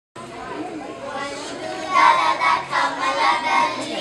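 Children's voices and chatter in a hall, growing louder about two seconds in.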